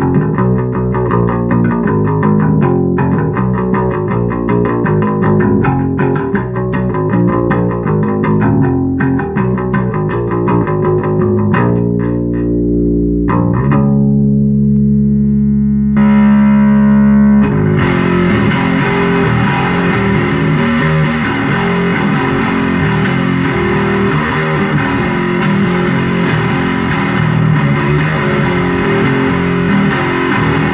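Ibanez Black Eagle electric bass played through a bass amp along with a rock track with distorted guitar and drums. Partway through, a few long held notes ring out, then the full band comes back in louder about 18 seconds in.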